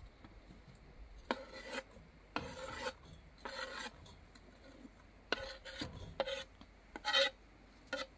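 A kitchen knife scraping along a wooden cutting board, sweeping chopped onion off the board into a pot, in about six short strokes; the loudest stroke comes near the end.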